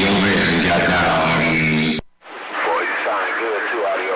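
CB radio transmissions heard over the receiver: a loud, hissy transmission carrying a wavering voice cuts off abruptly about halfway through as the station unkeys, and after a brief gap another station comes in talking, quieter and thinner.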